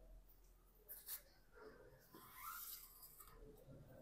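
Near silence with faint rubbing and two small clicks about a second in: gloved hands handling a steel gear cable and its housing at a bicycle's rear derailleur.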